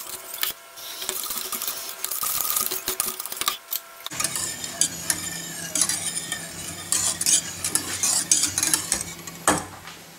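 Metal wire whisk stirring a liquid cream-and-egg custard base in a stainless steel saucepan, the wires scraping and ticking rapidly against the pan. A sharp clink comes near the end as the whisk is laid in the pan. A low steady hum starts about four seconds in.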